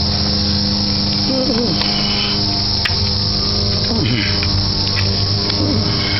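2006 PT Cruiser's four-cylinder engine running at idle, heard close in the open engine bay: a steady low hum with a loud, even hiss over it.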